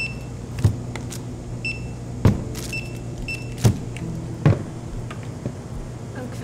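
Handheld barcode scanner at a shop checkout giving four short, high single beeps as items are scanned, with four sharp knocks of items set down on the counter in between, over a steady low hum.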